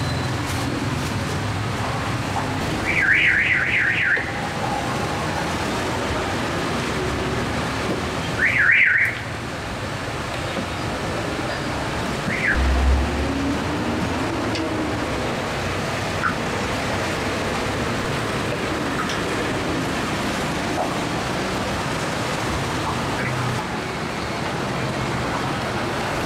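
Steady street traffic noise. Two short bursts of a fast, high, warbling electronic tone come about three and about eight seconds in.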